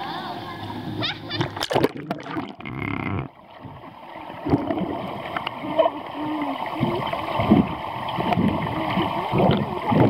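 Swimming-pool water splashing at the surface. About three seconds in the sound drops and turns muffled, as heard underwater: low, dull water sounds from the pool.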